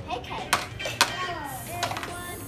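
A child imitating food frying with a hissing "tsss" sizzle from her mouth, starting about one and a half seconds in, after two sharp taps of a plastic spatula and toy food on a toy frying pan.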